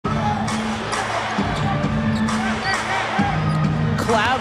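Live basketball game audio: arena music with a low bass line plays while a basketball is dribbled on the hardwood court, its bounces landing as sharp knocks, over crowd and voices.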